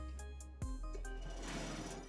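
Soft background music over a steady low hum, with a single knock about half a second in. Near the end comes a light scratching as tailor's chalk is drawn along a wooden ruler on cotton fabric.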